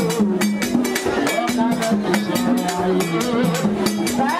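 Vodou ceremonial music: voices singing a held, stepping melody over a fast, steady drum and percussion beat.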